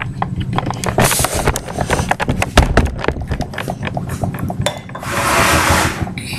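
Handling noise from a webcam-equipped camera or laptop being moved around: a rapid, irregular run of clicks and knocks, then a rushing burst about five seconds in.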